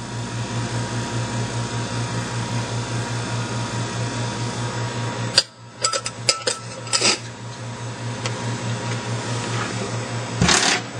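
Steady low hum from an Eppendorf 5402 refrigerated microcentrifuge standing with its cooling running and its rotor at rest. About halfway through come a few sharp clicks and knocks as the lid is shut and latched.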